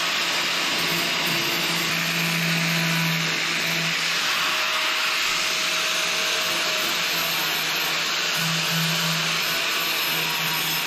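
Angle grinder running steadily with its disc grinding down steel body panel, the steady motor hum under a continuous gritty rasp of metal being ground.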